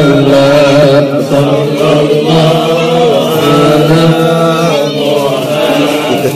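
A group of voices chanting Islamic devotional verses together in a slow melody with long held notes.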